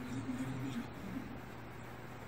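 Faint Japanese dialogue from an anime playing through laptop speakers across the room: a low male voice for about the first second, then mostly room hiss.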